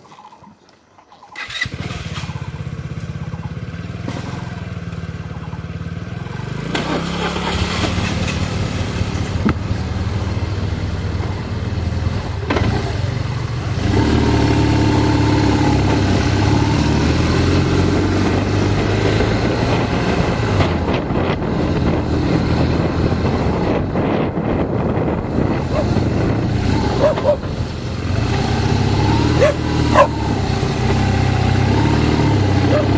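Motorcycle engine starting about a second and a half in, then running as the bike rides off, getting louder in steps as it picks up speed.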